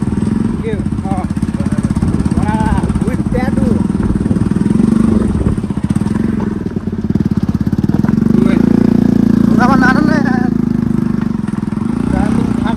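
Motorcycle engine running steadily under way on a rough dirt track, carrying two riders; its note grows louder about eight seconds in.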